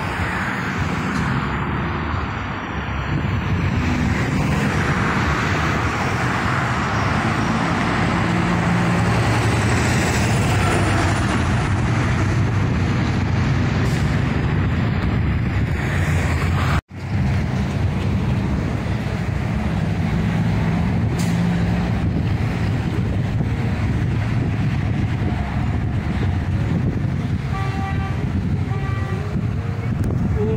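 Road traffic passing below on a multi-lane boulevard: a steady rumble of truck and car engines and tyres. The sound cuts out for an instant a little past halfway, then the traffic carries on.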